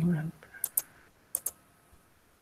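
Four short, sharp computer clicks in two quick pairs, the first pair about half a second in and the second about a second and a half in, against a quiet room.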